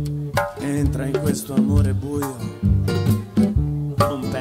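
Live band playing: strummed acoustic guitar over low bass notes and regular drum hits, with no sung words.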